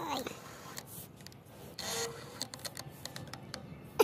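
Short scraping and rubbing noises with scattered light clicks, the longest scrape about two seconds in.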